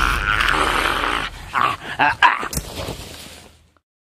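Rough growling and snarling, loud for about the first second, then breaking into a few shorter snarls with one sharp crack a little past the middle. It fades away to silence just before the end.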